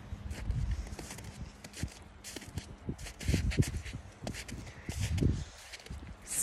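Footsteps crunching on snow over sand at a walking pace, with wind buffeting the phone's microphone in low gusts.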